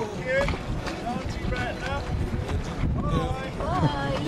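Wind rumbling on the microphone aboard a sailing yacht, with indistinct voices calling out over it.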